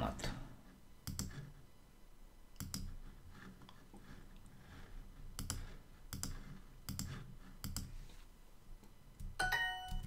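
A run of about eight separate clicks as word tiles are selected in a language-learning app, then near the end a short, bright chime of several tones, the app's correct-answer sound.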